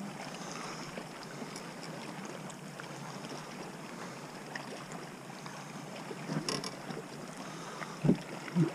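Steady wash of wind and water lapping around a bass boat, with a few light clicks and a short knock about six and a half seconds in.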